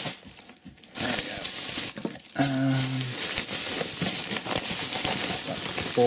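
Plastic mailing bag rustling and crinkling as it is handled and pulled away from a boxed knife, starting about a second in and going on continuously.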